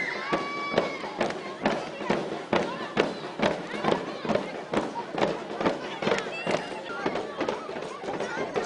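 Hand drums beaten in a steady rhythm of about two strokes a second, with a crowd of girls' voices shouting and cheering over it.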